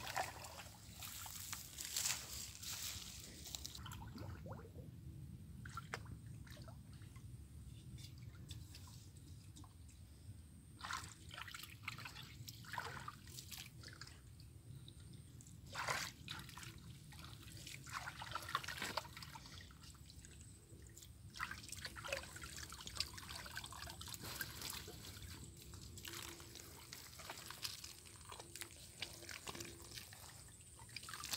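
Shallow muddy ditch water sloshing and splashing irregularly as a bamboo-framed push net is pushed and scooped through it, with drips and trickles of water in between.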